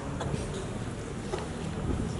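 Steady low background rumble, with a few faint ticks.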